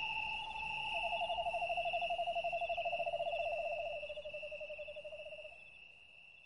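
A bird calling in a long, rapid series of low hoots that steps down in pitch, with a second series overlapping it, fading out near the end. A steady high insect trill runs underneath.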